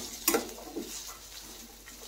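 A steel spatula stirring chopped carrots and onions in a stainless steel kadai, with faint scraping and a few light taps in the first second, then only a faint hiss.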